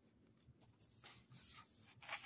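Faint rustling and rubbing of a sheet of drawing paper being handled and slid into place on a table, mostly in the second half.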